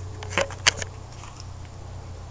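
Two sharp clicks about a third of a second apart, followed by a few fainter ticks, over a steady low hum.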